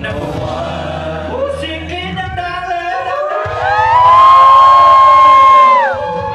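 A group of male singers performing live through microphones over backing music. About halfway through, one long, loud high note slides up and is held, then drops away near the end.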